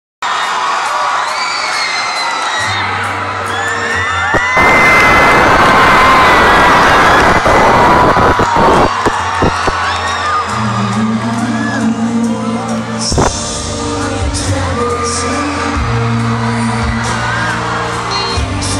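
Live band music with a singer, amplified through a concert PA, over a crowd that screams and cheers. The crowd noise is loudest from about four and a half to eight seconds in, and there are a few sharp knocks in between.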